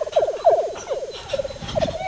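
A Rhodesian Ridgeback giving a loud, fast warbling whine that lasts almost two seconds, worked up over a rabbit it believes is in the pipe.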